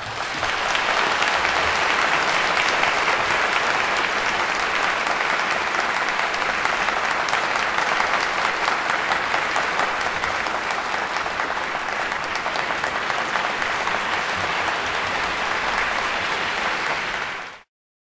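Audience applauding steadily, cut off abruptly near the end.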